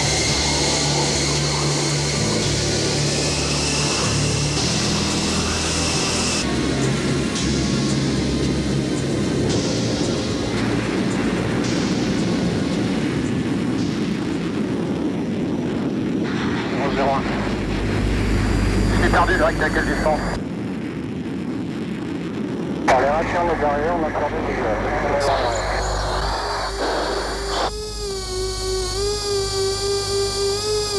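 Twin-turbofan SEPECAT Jaguar strike jets on the flight line, a steady high jet whine that rises slightly. Then a run of cut-together cockpit sounds: noisy engine and air sound, brief radio voices, and a steady warbling electronic tone in the last few seconds.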